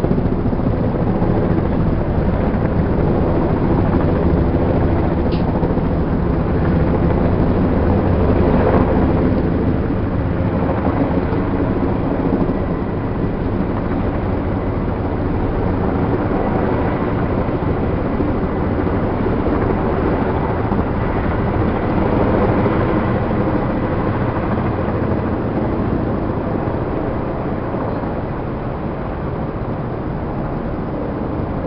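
Helicopter in flight: a loud, steady drone of rotor and engine, easing slightly near the end.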